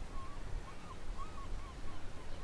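A quick series of short bird calls, about three a second, each a brief rising-and-falling note, over a low steady rumble of wind and sea.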